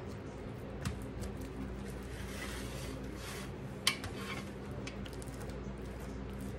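Silicone spatula spreading a thick cheese mixture in a pie crust in a glass pie dish, with soft squishing and scraping and two sharp clicks, one about a second in and a louder one near four seconds, over a steady low hum.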